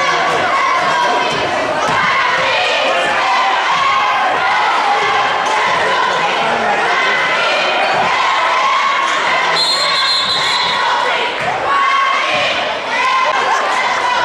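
Basketball game in a gym: the ball bouncing on the hardwood court amid shouting from players and crowd. A referee's whistle blows briefly about two-thirds of the way through.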